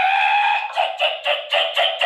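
A sound effect: one long held note that rises slightly in pitch, then breaks about three-quarters of a second in into rapid even pulses, about four a second.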